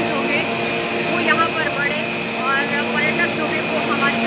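Steady mechanical hum of a cable car terminal's drive machinery, with a high whine over it, as a gondola cabin travels slowly round the station turn. Voices chatter in the background.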